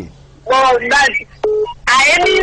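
A voice speaking briefly, then one short telephone beep about one and a half seconds in, and speech picks up again near the end.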